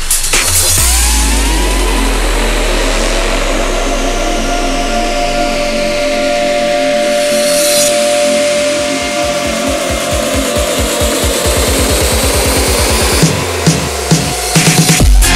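Breaks / drum-and-bass DJ mix in a breakdown. A held synth chord and sweeping effects give way to a rapid repeating roll that speeds up and builds into the drop near the end.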